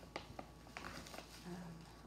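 A hand digging into a plastic bag of Epsom salt to take a pinch: a few faint clicks and rustles, with a short hesitant 'uh' from the woman about one and a half seconds in.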